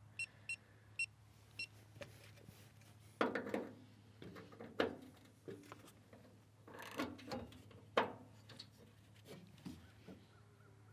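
Five short electronic beeps from a digital torque wrench during the first second and a half, then scattered knocks and rattles as the wrench and socket are fitted onto the shock absorber's upper 17 mm bolt, over a faint steady low hum.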